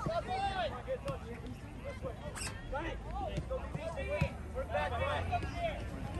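Scattered distant shouts and chatter of soccer players and spectators, with a couple of short sharp knocks.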